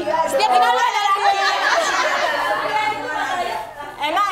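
Several women talking over one another at once, lively overlapping chatter with no single voice standing out; it fades somewhat near the end.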